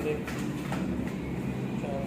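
Indistinct voices in a room over a steady low hum.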